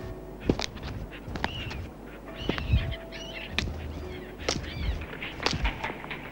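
Sharp knocks or strikes at about one a second, with several birds calling in a short cluster of arching calls around the middle.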